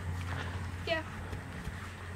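Faint hoof falls of a saddled horse walking at a slow pace over grass and a packed dirt track, with a low steady hum underneath.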